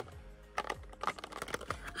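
A few light clicks and taps as small cardboard mini-highlighter boxes are handled, over faint background music.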